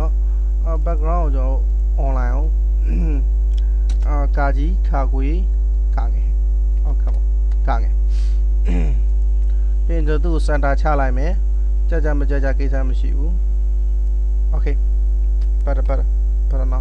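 Loud, steady low electrical mains hum running under everything, with a voice talking in short, broken phrases over it.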